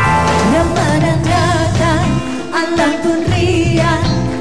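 A woman singing into a handheld microphone with vibrato over a pop band backing with a steady beat.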